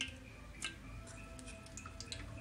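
Cumin seeds crackling in hot oil in a steel pan: a few sharp, scattered pops, the loudest right at the start and about two-thirds of a second in.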